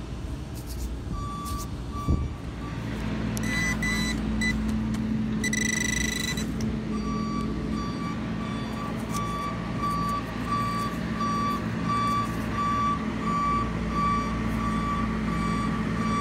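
Bobcat skid-steer loader with its engine running steadily and its reversing alarm beeping. The alarm gives a few beeps early, pauses, then beeps evenly about twice a second from about seven seconds in. Two brief higher-pitched tones sound during the pause.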